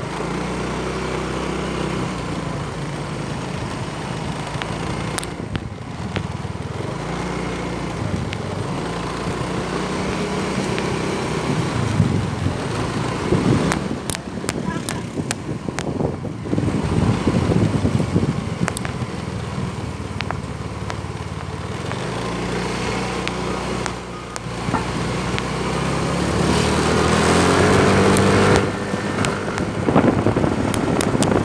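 Motorbike engine running under way, its pitch shifting as the bike speeds up and slows, climbing again near the end, with gusts of wind on the microphone.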